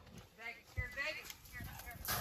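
Sheep bleating: three or four short, wavering calls, with thuds of hooves on dirt as the flock moves.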